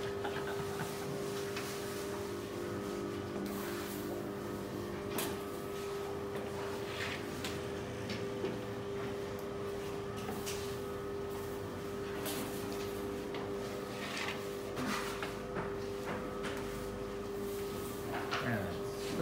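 A long wooden oven peel scraping and knocking against the metal sheet at the mouth of a stone oven as flat pide dough is slid in. There are a few scattered scrapes and taps over a steady hum.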